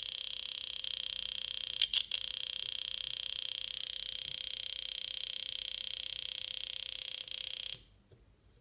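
Small loudspeaker driven by a breadboard oscillator circuit giving a steady high-pitched electronic tone with a fast flutter. A couple of clicks come about two seconds in, and the tone cuts off suddenly near the end.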